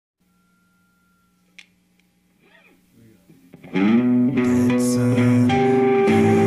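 A faint steady hum and a single sharp click, then a loud guitar song with held chords comes in abruptly a little past halfway.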